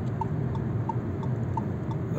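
Inside the cabin of a Fiat Egea 1.0 Turbo cruising at about 70 km/h: a steady low road and engine rumble, with a light regular tick about three times a second.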